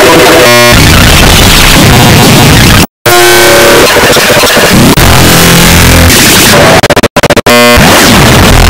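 Very loud, heavily distorted electronic noise with synthesizer-like tones, the cacophonous sound of audio mangled by stacked editing effects. It cuts out abruptly for a moment about three seconds in and stutters in rapid glitchy repeats just after the start and again near the end.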